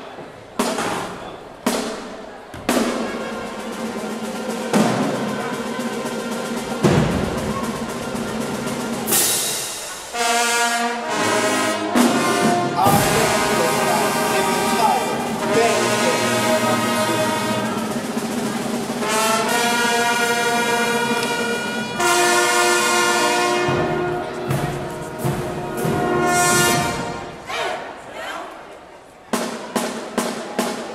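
High school marching band playing: sharp percussion hits open the passage, then the brass section holds long, loud chords, with a brief break partway through and more hits near the end.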